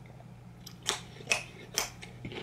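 Three sharp, crisp crunches about half a second apart: raw baby carrot being chewed close to the microphone.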